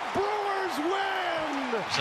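A man's voice calling out in long, drawn-out shouts over a cheering crowd.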